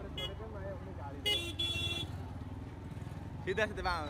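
Motorbike engine running at low revs among a street crowd, with a vehicle horn tooting twice about a second in, the second toot longer. Voices are heard near the end.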